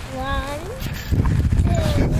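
A drawn-out wordless vocal sound rising in pitch, then wind rumbling on the microphone with a brief gliding voice sound near the end.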